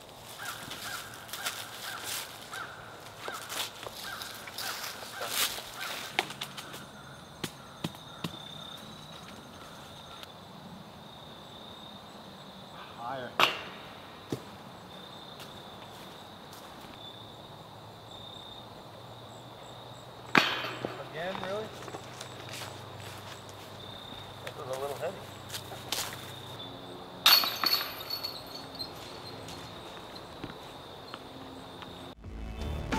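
A steady high insect trill from the surrounding woods. Scattered clicks run through the first several seconds, and three loud, sharp clattering hits come roughly seven seconds apart.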